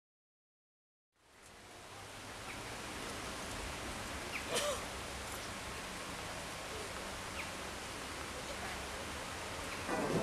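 After about a second of silence, steady outdoor background noise fades in as an even hiss. It carries a few faint short chirps and one brief sharper sound about four and a half seconds in.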